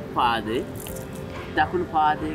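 Brief speech in two short phrases, over quiet background music with a steady held tone.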